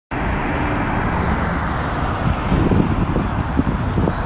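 Road traffic with a red double-decker bus running close by: a steady low rumble of engine and tyre noise.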